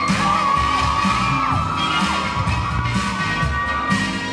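Hip-hop dance track with a steady beat and a high held tone that bends up and down, over a crowd of children cheering and whooping.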